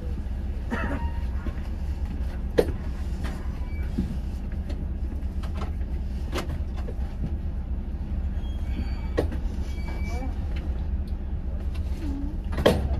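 Volvo B11RT coach's six-cylinder diesel engine idling with a steady low rumble, heard from inside the cabin, with a few scattered knocks and clicks.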